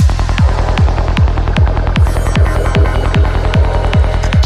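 152 BPM psytrance: a kick drum about two and a half times a second over a rolling bassline, with hi-hat ticks and synth layers above.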